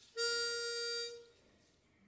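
A pitch pipe blown once: a single steady, reedy note held for about a second, giving a barbershop quartet its starting pitch.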